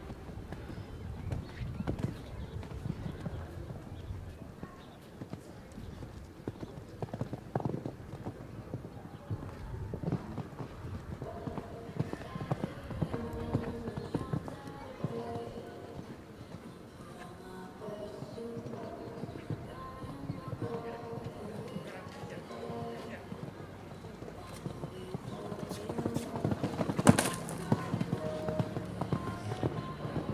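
Hoofbeats of a show-jumping horse cantering on a sand arena, a running series of soft thuds, with one sharper knock about three seconds before the end.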